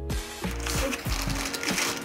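Plastic packaging bag crinkling as it is handled, starting about half a second in, over background music with a steady beat.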